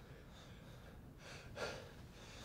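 Quiet room tone with one faint breath, a short intake of air, about one and a half seconds in.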